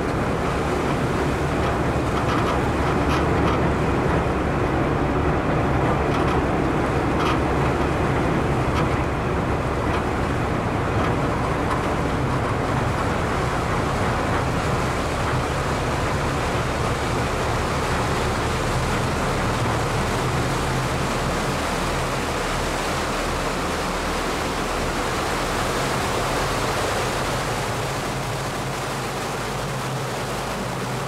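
Ferry engine running steadily with the rush of churning propeller wash at the stern, a low hum under a constant wash of water noise.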